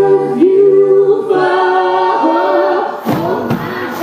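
Female lead voice holding long sung notes over several voices singing in harmony, with little or no instrument beneath; two sharp percussive hits land about three seconds in.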